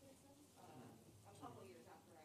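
Faint, indistinct chatter of several people talking in a large meeting room.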